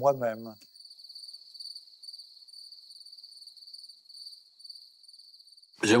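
Crickets chirping in a faint, steady, high-pitched trill.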